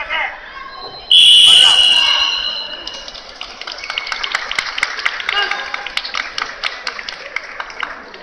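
A loud ringing time signal about a second in, fading out over a second or two, marks the end of the bout. It is followed by scattered clapping from the spectators.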